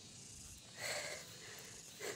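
A short, hard exhale about a second in, from someone out of breath while climbing a steep slope on foot, over faint outdoor background.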